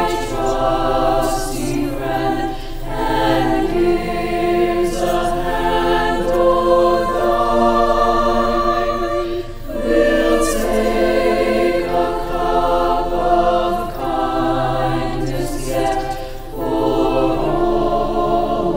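A choir singing, with short breaks between phrases about nine and sixteen seconds in.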